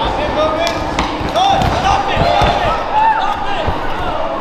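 Several people in the crowd shouting over one another with raised voices, and a few dull thuds from the fighters' bodies against the cage and the padded mat as they clinch.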